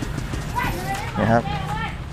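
A man speaking a few short words over the steady background noise of a busy market, with a few faint clicks.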